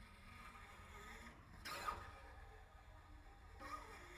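Solo cello played with extended noise techniques: faint scraping and rubbing sounds on the instrument rather than pitched notes, with a brief louder swishing stroke about two seconds in and a shorter one near the end.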